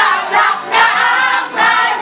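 A cheering squad singing a cheer together in a loud chorus of many voices, with a few sharp beats about a second apart.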